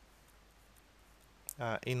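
Mostly near silence with faint clicks of a pen stylus tapping on a drawing tablet as tally strokes are written, then a sharper click and a man's voice starting near the end.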